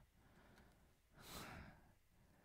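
Near silence, with one faint breath about halfway through, lasting about half a second.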